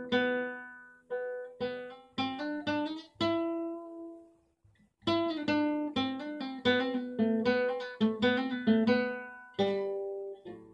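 Nylon-string flamenco guitar played in an improvised passage: strummed chords ringing and fading, a short pause about four seconds in, then a quicker run of strummed chords, the last one ringing out.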